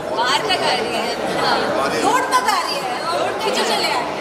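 Several people talking at once, their voices overlapping in unclear chatter.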